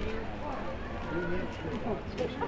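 Crowd chatter: many people talking at once, no single voice standing out, with a few light clicks among it.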